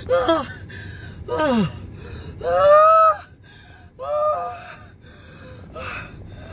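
A man's helpless, breathless laughter: four gasping whoops with no words, the first two short and falling in pitch, then a long high held squeal about halfway through and a shorter one after it. He is laughing so hard he can't breathe.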